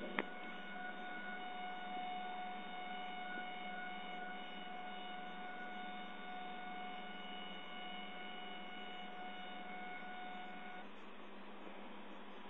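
Extruder stepper motor of a Prusa i2 3D printer giving a steady high-pitched whine, one tone with overtones, after a sharp click at the start. The whine cuts off about a second before the end. The extruder is failing to feed filament properly.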